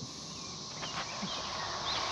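Quiet outdoor background: a steady faint hiss with a few faint bird chirps in the second half.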